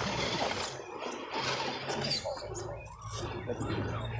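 Radio-controlled scale rock crawler's electric motor and gears whining in short bursts of throttle as it climbs over rocks, with faint chatter from onlookers.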